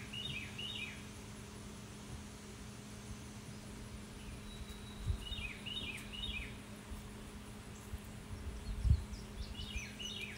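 A small bird singing two short phrases of quick falling chirps, one at the start and one about five seconds in, over a faint steady hum. Two soft low bumps come about five and nine seconds in.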